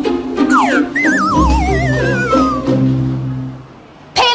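A comic sound effect over background music: a quick falling glide, then a long warbling whistle-like tone that slides steadily down in pitch over about a second and a half. The music fades away near the end.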